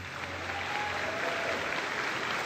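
Audience applauding at the end of a concert band piece, starting as the band's last low note dies away in the first moments.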